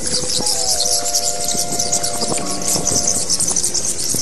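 A spooky sound effect of a swarm of bats squeaking: a dense, continuous high-pitched chatter, with a few faint eerie held tones beneath it.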